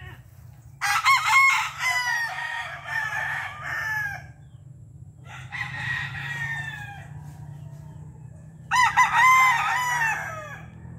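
Roosters crowing: three bouts of crowing, a loud one about a second in, a fainter one in the middle and another loud one near the end.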